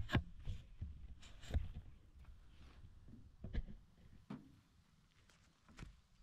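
Camera being handled and set down: a few dull knocks and rustles, fading to near silence near the end.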